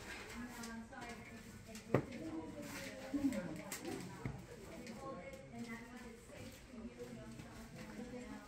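Other people talking quietly in the background, the voices indistinct, with one sharp knock about two seconds in.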